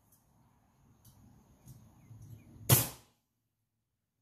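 Faint handling noise, then a single sharp knock about three-quarters of the way through that dies away quickly.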